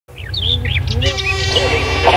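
Birds chirping: a run of quick rising and falling chirps over a steady low rumble, with a held tone joining about halfway.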